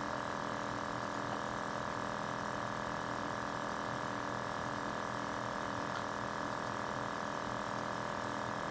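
Steady machine hum with several constant tones from a powered-up 3D printer standing idle, its fans and motor electronics running.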